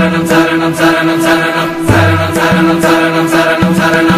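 Music from a Tamil Ayyappan devotional song: an interlude with a held drone note, chant-like voices and instruments over a steady percussion beat.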